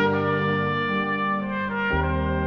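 Film score: a subtle, film-noir jazz trumpet playing a slow melody of long held notes over a minimalist sustained accompaniment, with a few unhurried note changes in the second half.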